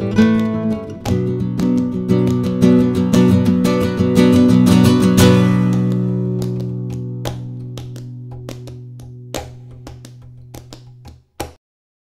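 Flamenco acoustic guitar music: rapid strummed chords, then a held chord ringing and slowly fading with a few scattered strokes, cut off about eleven seconds in after one last stroke.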